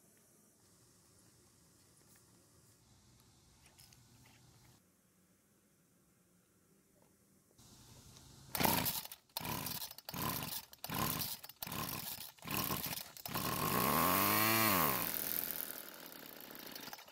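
Homelite two-stroke string trimmer being pull-started: after near silence, several quick pulls of the starter cord about halfway in. The engine then catches and runs for a couple of seconds, rising and then falling in pitch before dying. It is running only on fuel poured into the carburettor throat for a test start.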